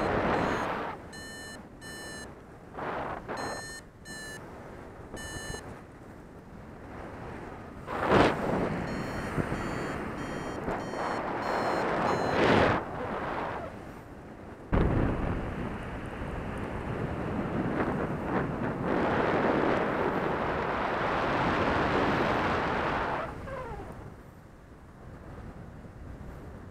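Airflow buffeting an action camera's microphone in paraglider flight, with sudden loud gusts about 8, 12 and 15 seconds in. Over it, rapid repeated beeping from a flight variometer through the first six seconds and again from about nine to twelve seconds, the signal that the glider is climbing.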